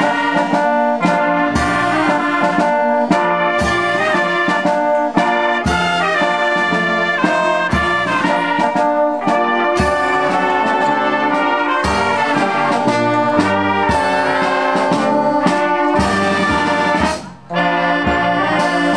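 A small wind band of brass and saxophones playing a piece, with a regular low beat under the melody. The music breaks off briefly shortly before the end.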